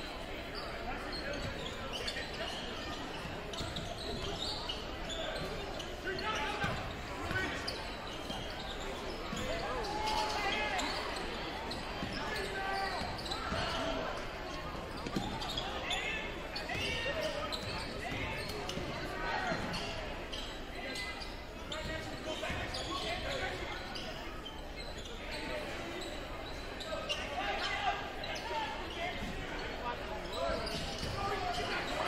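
Indoor basketball game sound: a basketball bouncing on a hardwood court, with the voices of players and spectators carrying through the echoing gym.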